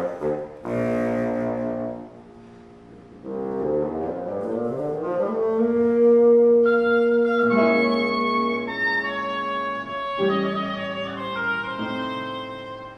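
Oboe, bassoon and piano playing together. A chord about a second in is followed by a rising figure, then long held wind notes over the piano, with the oboe coming in about six seconds in.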